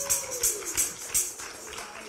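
Handheld jingle tambourine shaken and struck in an irregular rhythm, the jingles growing fainter toward the end. A held note slides down and fades out in the first second.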